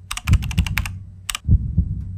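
Typing sound effect: quick runs of keystroke clicks in the first second and one more a little past the middle, as a title is typed out on screen. Underneath are a steady low hum and deep low thumps, two of them close together in the second half.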